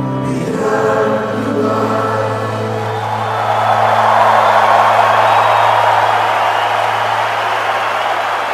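Live rock band holding and letting ring the final chord of the song, a low bass note sustaining for several seconds. About three seconds in, an arena crowd's cheering and applause swells up over it and carries on.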